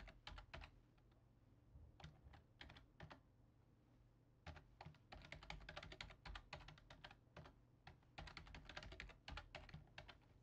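Faint typing on a computer keyboard, in about four short bursts of quick keystrokes with pauses between them, as passwords are typed into a form.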